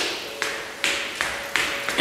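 Footsteps on hard stairway treads: about five sharp steps at an even walking pace of roughly two and a half a second, over a faint steady hum.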